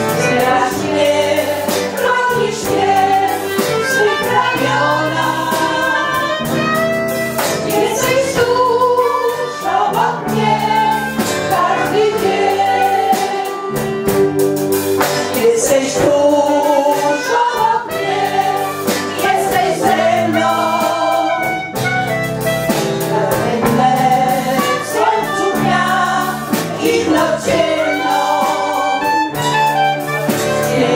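An amateur seniors' choir, mostly women with a few men, singing a song together in several voice parts.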